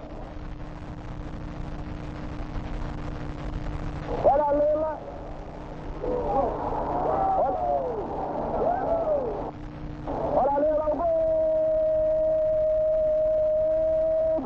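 Football match broadcast: stadium crowd noise under short bursts of excited commentary, then one long steady held note for about three seconds near the end.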